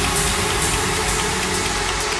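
Progressive trance music in a breakdown: a steady wash of synth noise over a sustained low drone, with no beat.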